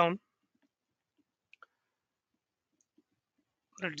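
Faint computer mouse clicks: two quick clicks about a second and a half in, and a softer one near three seconds.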